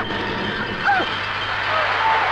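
Steady loud rushing noise during a scuffle, with a short falling vocal cry about a second in.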